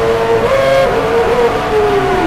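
Live rock band recorded from the audience, loud: one long held note that wavers up and down and slides downward near the end, over the rest of the band.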